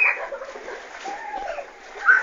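Water splashing in an inflatable paddling pool, with a short loud burst right at the start, then lighter splashing under faint children's voices.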